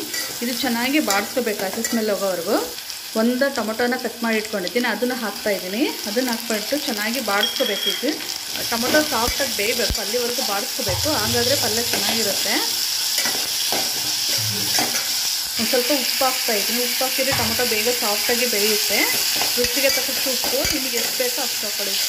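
A metal ladle stirring and scraping chopped vegetables around a pot as they fry, in repeated strokes over a steady sizzle. The sizzle gets stronger about a third of the way in, once chopped tomatoes are frying with the onions and chillies.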